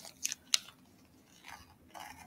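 Small glass two-hole triangle beads clicking lightly as they are handled and set down on a tabletop: two short sharp clicks in the first half-second, then a few fainter soft handling sounds.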